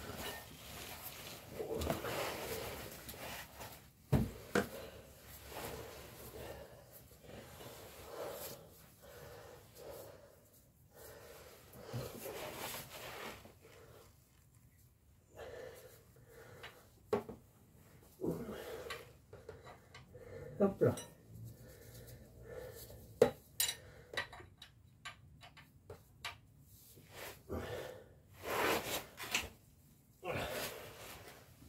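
Scattered sharp clicks and knocks with rustling between them: a wrench and a plastic oil drain pan being handled under a car as the engine's oil drain plug is worked loose during an oil change.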